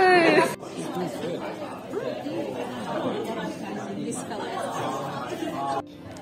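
A loud high voice breaks off about half a second in, leaving several people chattering quietly in the background.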